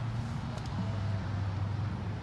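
A steady low hum and no engine note: the just-started 2021 Ford Mustang Mach-E, an electric car, runs silently.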